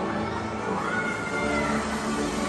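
A single high-pitched whooping cheer from an audience member as a graduate receives her diploma: the voice rises, holds briefly and falls away. Background music plays underneath.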